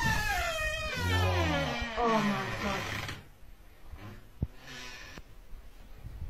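A high, whining animal cry that slides down in pitch and breaks into several wavering calls over about three seconds. A single sharp click sounds about four and a half seconds in.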